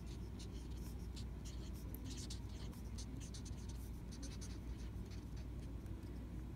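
Felt-tip marker writing on paper: a run of short, quick strokes as a phrase is written out, over a faint steady low hum.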